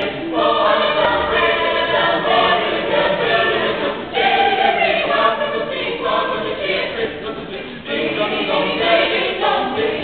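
A high school choir singing together, in phrases with brief breaks about four and eight seconds in.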